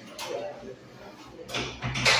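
Mediclinics Speedflow Plus stainless-steel hand dryer starting up about one and a half seconds in, a rising rush of air.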